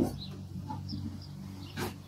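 Faint handling of metal hand planes picked up from a workbench, with a single short knock near the end, over a low steady hum.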